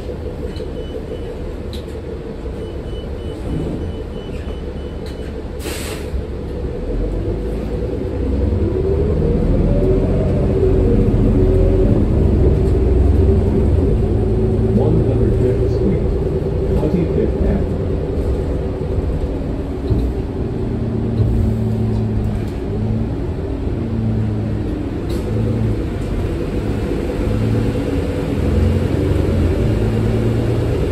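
Cabin sound of a New Flyer XD40 city bus with a Cummins L9 diesel and Allison automatic transmission. It idles at a stop with a series of short beeps, gives a short sharp burst of air about six seconds in, then pulls away: the engine drone grows louder and rises in pitch as it accelerates, then runs on through the gear changes.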